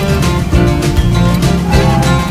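Background music with a steady beat over a strong bass line.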